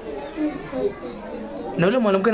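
Voices talking quietly, several at once, with a louder voice starting up again near the end.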